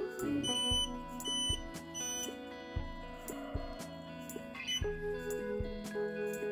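Three short, high electronic beeps from a BAI 15-needle embroidery machine's touchscreen control panel as its arrow buttons are pressed to move the design, over background music with a steady beat.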